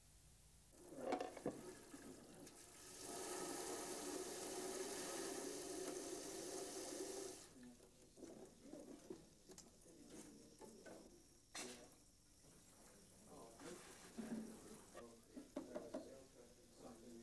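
Water running steadily, like a tap into a sink, for about four and a half seconds, then shutting off. Before and after it come small clicks and handling sounds with faint voices.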